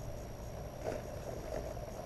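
Outdoor background noise: a low steady rumble with a faint steady high tone, and a few faint soft rustles from the nylon pants liner being handled.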